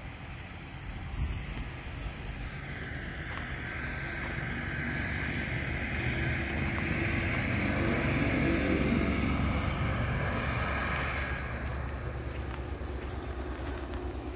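A tractor passing by on the road: a low engine rumble with tyre and engine noise that swells over several seconds, is loudest about eight or nine seconds in, then fades as it moves away.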